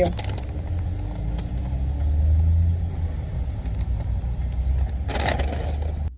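Car engine running, heard from inside the cabin of a Honda: a steady low rumble that swells about two seconds in. A brief rustling noise near the end.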